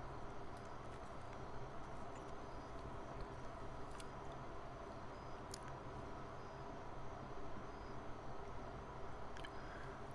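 Faint steady low hum with a few faint ticks.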